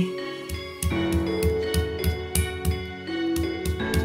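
Background instrumental music with a steady beat of about four to five strokes a second and held tones.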